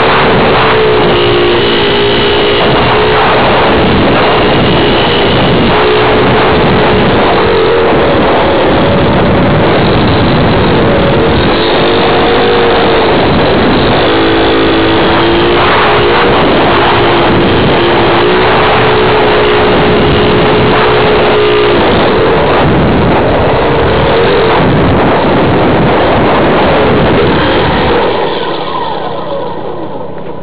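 An RC model plane's motor and propeller, heard through its onboard camera: a loud buzzing whine whose pitch shifts as the throttle changes, over heavy wind rush. The motor sound falls away near the end as the plane comes down on the grass.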